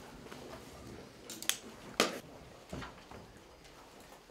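Quiet room background with a few short, sharp clicks; the loudest comes about two seconds in, with smaller ones shortly before and after.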